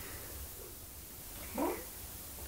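A domestic cat gives one short meow about a second and a half in, rising in pitch.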